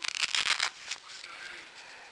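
Velcro closure on a neoprene face mask being worked by hand: a crackly rasp of hook-and-loop tape for a bit under a second, then fainter rustling of the fabric.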